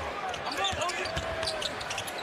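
Basketball being dribbled on a hardwood court, over the murmur of an arena crowd.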